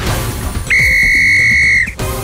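Intro music with drums, then one loud, steady whistle blast lasting just over a second, starting about two-thirds of a second in and cutting off shortly before the end.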